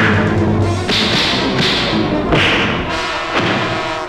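Film fight-scene sound effects: a quick series of swishing whooshes and punch thuds over background music.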